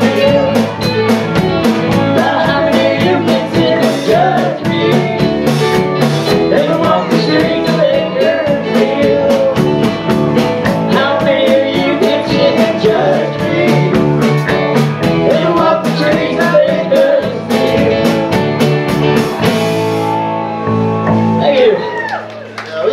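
A live country-rock band playing, with singing, electric guitar and a drum kit. About two seconds before the end the drums stop and a final chord rings out.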